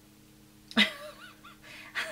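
A pet animal's short, wavering vocal noise, about a second long, starting just under a second in.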